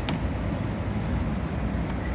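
Steady low outdoor rumble like street traffic, with a faint click right at the start and another near the end as the scooter's folding stem and latch are handled.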